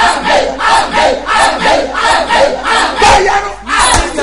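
Loud, fervent shouted prayer: a man's voice crying out in quick, rhythmic bursts, about two or three a second.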